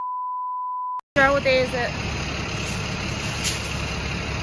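A steady 1 kHz test tone, the reference beep that goes with a colour-bar test card, lasting about a second and cutting off abruptly. After a brief silence, steady background noise comes in with a short burst of a voice.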